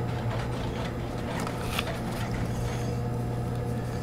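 The salvaged electric motor of a homemade power hammer running, with a steady low hum as it drives the belt and pulleys. A few faint clicks come from the mechanism.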